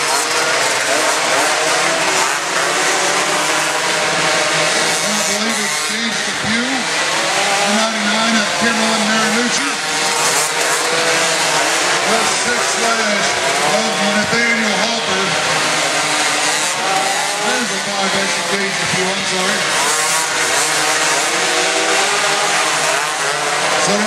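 Several mini quad engines racing at once, their pitch rising and falling again and again as the riders open and close the throttle through the turns of a dirt flat track.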